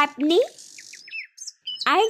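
A few short, high bird chirps in quick succession in a pause between lines of cartoon dialogue, just after a brief soft hiss.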